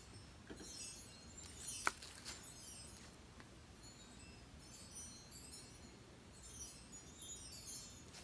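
Quiet handling noise of a paint cup and stir stick: small scattered clicks and taps, with one sharp click about two seconds in.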